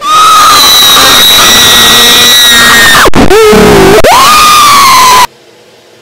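A person screaming very loudly on a high held pitch, which drops lower for about a second near the middle, glides back up, then cuts off suddenly about five seconds in.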